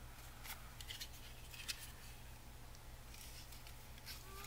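Faint rustle of a cardstock strip being handled, with a few short, soft scrapes as it is worked toward a corner punch, over a low steady hum.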